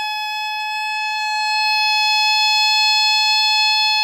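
Unaccompanied alto saxophone holding one long, high, sustained note that swells louder in the middle.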